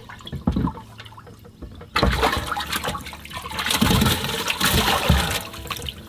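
Water splashing and sloshing in a bass boat's livewell as an arm reaches in to grab a bass, starting suddenly about two seconds in.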